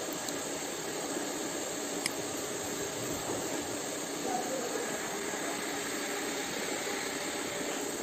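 Steady, even fan hiss from the laser marking setup, with no distinct marking or motor sound standing out.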